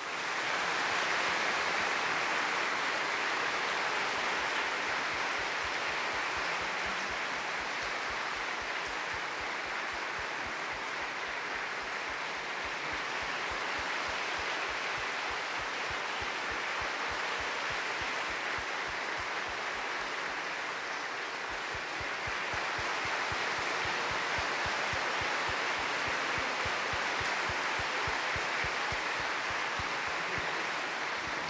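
Large audience applauding, starting suddenly and going on steadily, growing a little louder about two-thirds of the way through.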